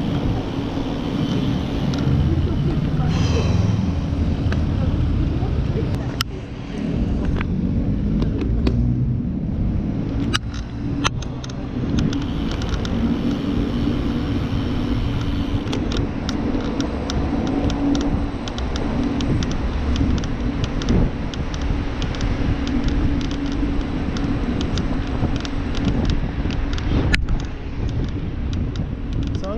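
Steady low rumble of wind and road noise picked up by a camera on a road bike being ridden, with many small clicks and knocks scattered throughout.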